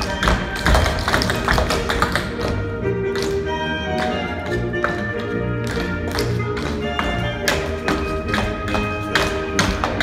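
Music with a steady percussive beat.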